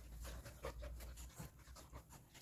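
A golden retriever panting faintly in quick, irregular breaths, with rustling of fabric as shorts are pulled onto it.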